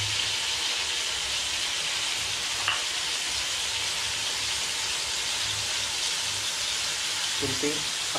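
Pork for sisig sizzling steadily in hot oil in a wok, with one light click about two and a half seconds in.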